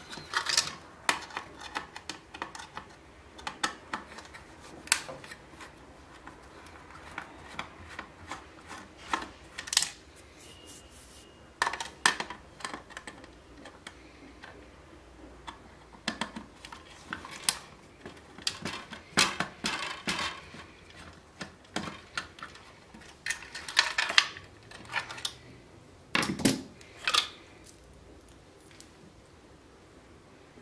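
Irregular clicks, knocks and rattles of a screwdriver and small parts against the black plastic housing of a Medion MD82464 CD radio being taken apart, as screws are turned out and circuit boards lifted loose. The clicks come in bunches with short lulls between, and fall quiet for the last couple of seconds.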